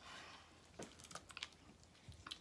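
Faint soft scraping and a few small clicks of a spatula working thick, stiffening cold-process soap batter out of a plastic bowl and into a loaf mold.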